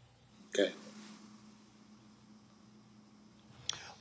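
A single short spoken "okay", then a quiet stretch of room tone with a faint steady hum until speech starts again at the very end.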